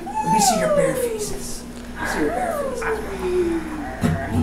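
A person's voice making two long falling wails, each sliding steadily down in pitch for about a second and a half, the second starting about halfway through.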